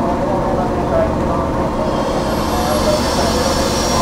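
A 485-series electric train standing at a platform, its onboard equipment running with a steady hum and hiss under the chatter of onlookers. About halfway through, a faint high whine joins in.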